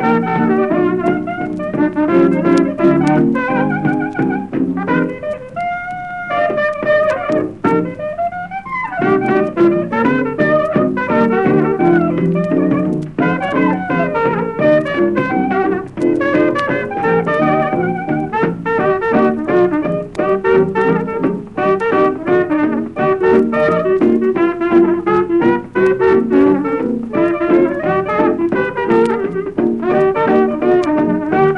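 Traditional jazz band recording: a trumpet-led brass front line over a steadily strummed rhythm section. About five seconds in, the ensemble drops out for a few seconds of solo break, then comes back in.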